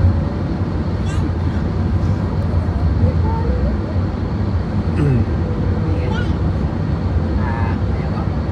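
Steady low road-and-engine rumble heard from inside a moving vehicle cruising along a highway, with faint voices now and then.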